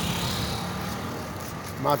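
A motorcycle passing on the road, its engine fading away steadily, and a man's voice starting just before the end.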